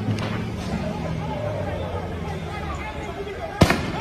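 A single sharp, loud bang, like a blast or gunshot, comes a little before the end, over a background of voices and street noise.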